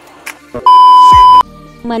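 A loud, steady electronic beep at a single pitch, lasting under a second, with a tone sliding sharply down in pitch beneath it: an edited-in sound effect at a cut between clips.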